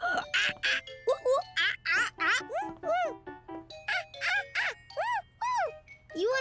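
A child's voice making playful monkey "ooh ooh ah ah" hoots, a string of short rising-and-falling calls about twice a second, over light music with tinkling notes.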